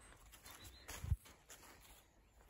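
A single low, dull thump about halfway through, just after a brief sharp tick, over a faint outdoor background.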